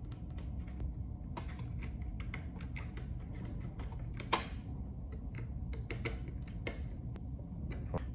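Light clicks and taps of a screwdriver and wire being worked at a plastic lamp-holder terminal block, the sharpest click about four seconds in, over a steady low background hum.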